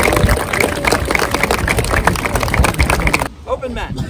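A small crowd applauding with dense, even clapping, which cuts off abruptly a little over three seconds in. A man's voice speaks after that.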